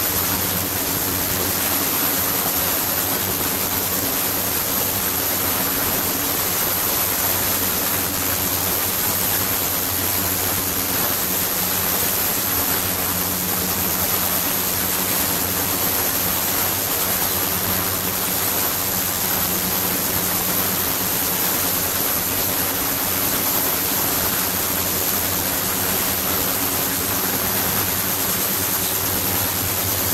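Ultrasonic water tank running with its liquid circulating: a steady rush of moving water with a low hum and a high, steady whine over it.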